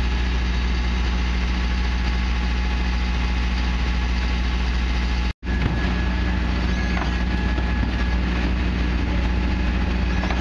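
Mercedes Econic refuse truck with a Faun Rotopress body standing with its diesel engine idling, a steady low hum. The sound cuts out for an instant about five seconds in.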